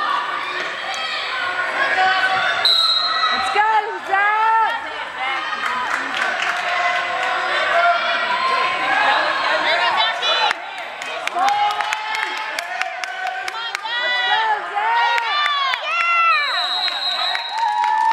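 Gym sounds during a wrestling bout: spectators shouting, and wrestling shoes squeaking and scuffing on the mat, with scattered sharp slaps. A steady high-pitched tone sounds briefly twice, about three seconds in and again near the end.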